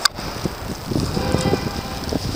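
Wind buffeting the camera microphone in a snowstorm: a rough, gusty rumble that grows louder, after a sharp click at the very start.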